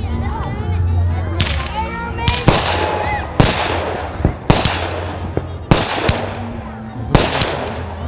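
Aerial fireworks bursting overhead: about ten sharp bangs, several coming in quick pairs, each trailing off after the report.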